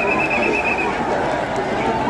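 Crowd of protesters shouting and chattering, with a short, high, pulsing trill of about eight quick notes in the first second.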